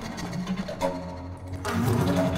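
Paetzold contrabass recorder with live electronics playing contemporary music: low held tones broken by scattered clicks. It grows louder near the end with a burst of airy, breathy noise.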